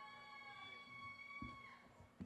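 Near silence, with a faint high-pitched tone held steady for about two seconds and a soft thump near the end.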